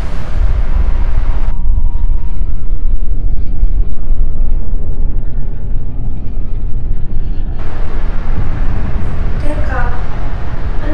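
A loud, steady low rumble, its upper hiss dropping away for most of the middle and returning near the end. A woman's voice begins just before the end.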